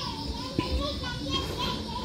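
Faint background voices of children calling and playing, with a single light click about half a second in.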